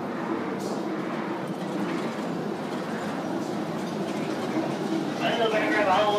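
Ride train rolling along its track through a mine tunnel: a steady rumbling run of wheels on rail, with faint voices under it.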